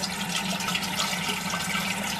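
Steady rushing background noise with a faint low hum underneath.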